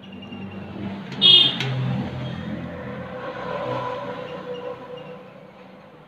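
A vehicle passing by, its hum swelling and then fading away, with a short, loud high-pitched horn toot about a second in.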